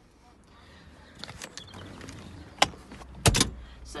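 Handling and movement noise inside a small car's cabin: rustling that grows louder, a sharp click about two and a half seconds in, then a heavy double knock just after three seconds.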